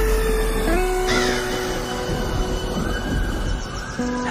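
Music: held notes, some sliding in pitch, over a steady low bass.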